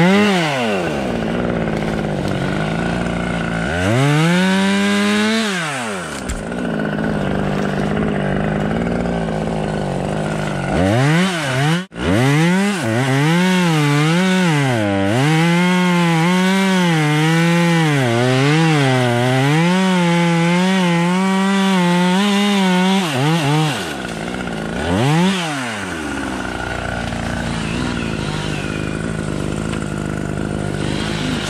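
Two-stroke chainsaw idling, revved up briefly near the start and again about four seconds in. It is then held at high revs, cutting through a fallen tree trunk for about twelve seconds, its pitch dipping and rising under the load. One more short rev comes near the end.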